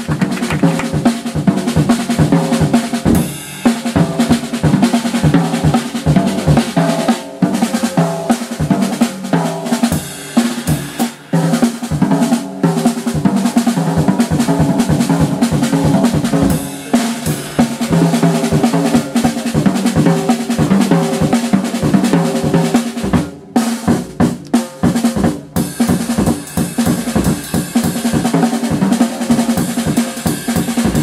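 Live jazz: a drum kit played busily, with snare, bass drum and cymbal strokes, over an acoustic double bass. The playing breaks off sharply a few times about three-quarters of the way in.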